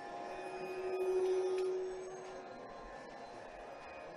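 Violin holding one long note in a Carnatic raga that swells and then fades away about halfway through, over a faint steady drone.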